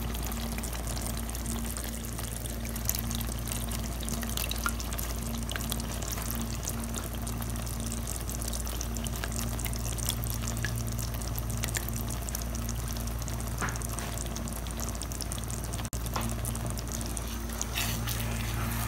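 Tamarind pulp poured into a wok of hot oil and fried masala, the mixture sizzling and crackling steadily with many small pops. A steady low hum runs underneath.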